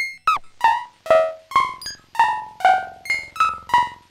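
Synton Fenix 2D modular synthesizer playing a run of short plucked notes of changing pitch, about two or three a second, each dying away quickly, through its analog delay set to the short delay position.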